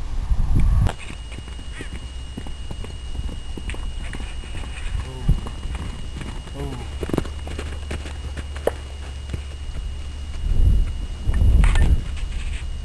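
Hoofbeats of a Paso Fino stallion moving loose on a sandy round-pen floor, with a couple of short pitched calls around the middle. Gusts of wind on the microphone rumble loudly near the end.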